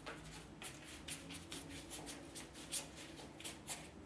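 Large goat-hair hake brush swishing paint across watercolour paper and working it in the palette: a faint, irregular run of short, soft brush strokes, several a second.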